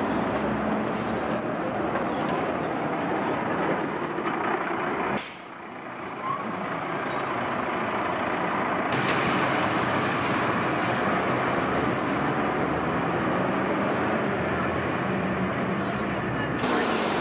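City buses and street traffic running: steady engine noise with traffic hum. It drops sharply about five seconds in and comes back up to full level around nine seconds.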